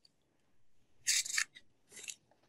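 Near silence, broken about a second in by one short, soft rustling hiss lasting about half a second, then a faint tick near the end.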